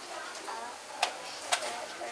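Magnetic counters clicking onto an upright metal baking tray as they are moved by hand: two sharp clicks about half a second apart.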